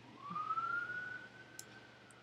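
Faint siren wail: a single tone that rises over about a second, then slowly sinks again. A few mouse clicks come in the second half.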